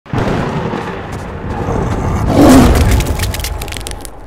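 Cinematic title-intro sound effect: a deep rumble that swells to a loud boom about two and a half seconds in, followed by a run of crackles that fade away.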